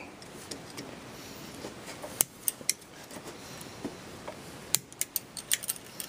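Light metallic clicks and scrapes of a steel push tool working a spring-wire pin retainer down over the trigger-group pins inside a Saiga 12 receiver: a few separate clicks about two seconds in, then a quicker run of clicks near the end.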